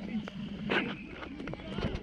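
River water splashing and sloshing around men wading chest-deep, with a couple of louder splashes. Men's voices call in the background.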